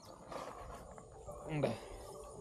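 A brief vocal sound from a person, lasting a fraction of a second, about one and a half seconds in, over faint low background noise.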